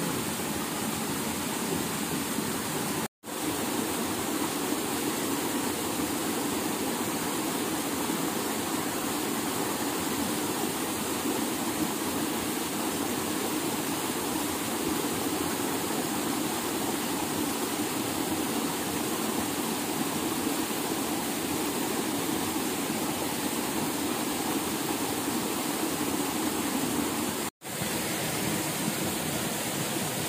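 Steady rushing of running water, like a stream or small waterfall, with two brief complete drop-outs, about three seconds in and near the end.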